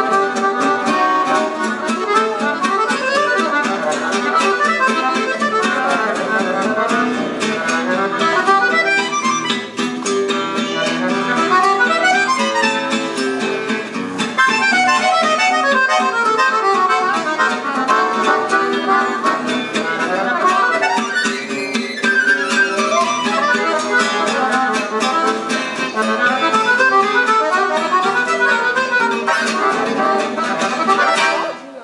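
Gypsy jazz (jazz manouche) duo playing live: an accordion plays quick running melodic lines over acoustic guitar accompaniment.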